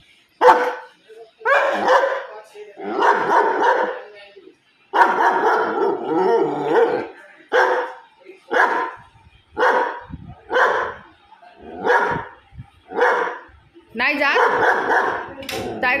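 German Shepherd barking repeatedly at a cat outside the window: longer, drawn-out barks in the first half, then short barks about one a second.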